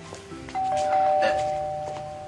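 A two-note doorbell chime, a higher note then a lower one, strikes about half a second in and rings on, slowly fading.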